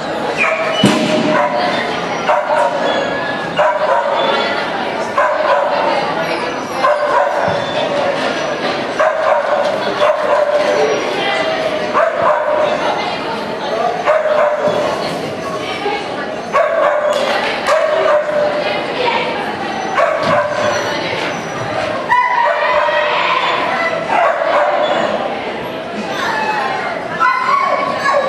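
A dog barking over and over, short pitched barks and yips coming in quick runs, mixed with people's voices.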